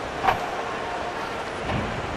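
Busy city street ambience: a steady wash of traffic and crowd noise, with one brief sharp sound about a third of a second in.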